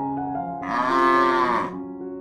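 A zebu cow mooing once: a loud call of about a second, starting about half a second in and dropping in pitch as it ends, over soft piano music.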